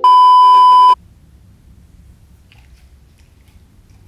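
A loud, steady electronic beep, the test tone that goes with TV colour bars, lasting about a second and cutting off suddenly, then faint room noise.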